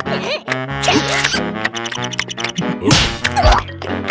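Playful cartoon score full of sliding notes, laid over slapstick sound effects, with a loud whack about three seconds in.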